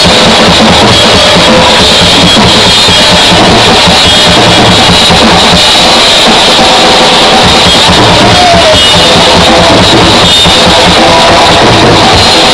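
A rock band playing live and loud, with a drum kit keeping a steady beat under guitars, the whole sound dense and close to overloading the recording.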